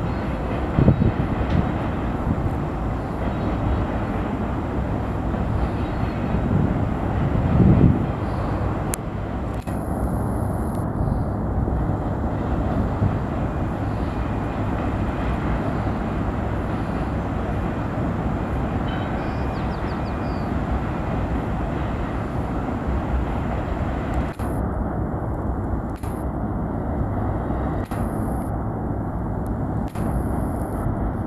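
Steady rumble of a Union Pacific double-stack intermodal freight train's cars rolling across a steel truss bridge, with brief low thumps about one and eight seconds in.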